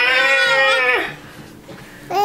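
Baby's long, wavering high-pitched squeal, stopping about a second in.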